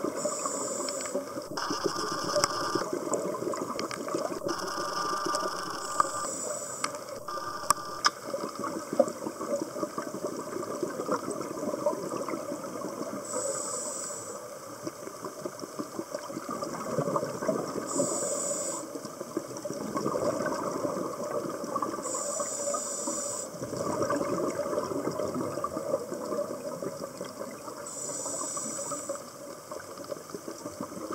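Underwater sound of a scuba diver's regulator breathing: a hiss that returns every four to five seconds, with a rush of exhaled bubbles between, over a steady crackle. A few sharp clicks come in the first eight seconds.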